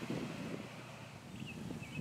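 Faint light breeze: a soft, steady rustle of wind.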